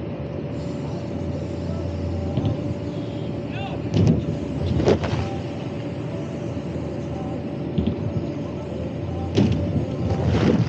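Steady machine hum with a constant mid-pitched tone: a petrol generator running the blower that keeps an airbag lander inflated. A few short, loud noises break through about four and five seconds in and again near the end.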